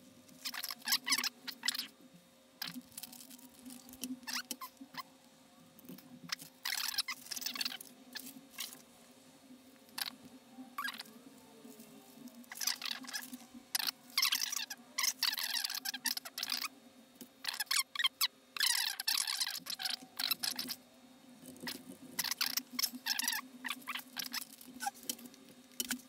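Crinkling and rustling of small plastic parts bags and electronic components being handled, in irregular bursts lasting up to a second or so, over a faint steady hum.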